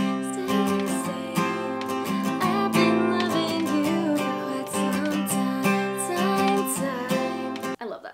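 Steel-string Taylor acoustic guitar with a capo, strummed through a G, Cadd9, Em7, D chord progression in a down-down-up-down-up pattern at a bouncy, fairly fast pace; the strumming stops suddenly near the end.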